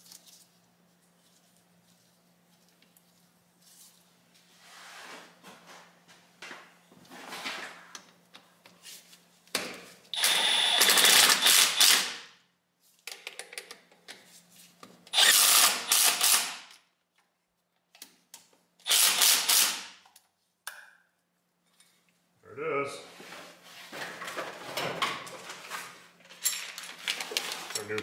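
Cordless power tool driving the new fuel lift pump's mounting bolts on a Cummins 5.9 diesel, running in three bursts of about two seconds each in the middle stretch. Softer clinks and handling of parts come before and after, with plastic crinkling near the end.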